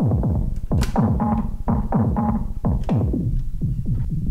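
Make Noise modular synth drum pattern, about three hits a second: MATHS function envelopes strike a feedback-patched QPAS filter into short kick-like hits whose pitch falls fast. Some hits ring with a brief resonant tone as the filter's Q is stepped by the sequencer.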